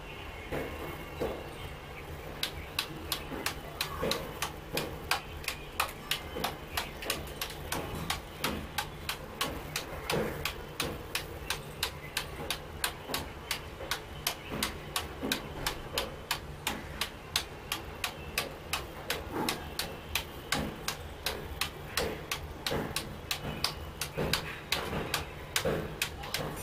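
A table tennis ball bouncing over and over on a computer keyboard used as a paddle: a steady run of light, sharp clicks, about three a second, starting about two seconds in.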